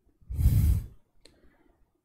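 A man breathing out hard into a close microphone, once, for about half a second, the air rumbling on the mic; a faint click follows a moment later.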